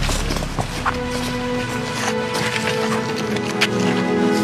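Slow background music of sustained held notes, with a low bass note fading out in the first second or so. Light scattered steps and crunches sound beneath it, as of footsteps on a gravel path.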